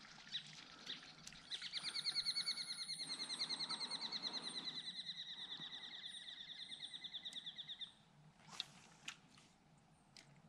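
A bird's long, rapid trill of evenly pulsed high notes, held for about six seconds and slowly fading. There are a few light knocks before and after it.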